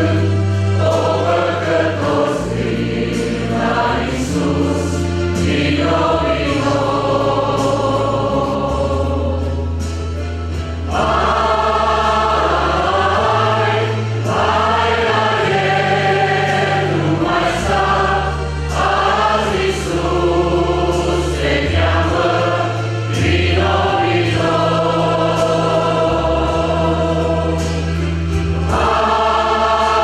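Mixed choir of men and women singing a hymn in phrases, over steady low accompanying notes that shift with each chord.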